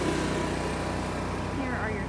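A small engine running steadily at an even idle, a low constant hum with no change in speed.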